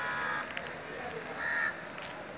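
A crow cawing: one harsh call at the start and a shorter one about one and a half seconds in.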